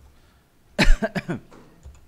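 A person coughs a few times in quick succession about a second in, a short, sudden burst louder than the surrounding speech.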